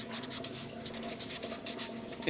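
Pen writing on notebook paper: a quick run of short, irregular scratchy strokes as words are written out by hand.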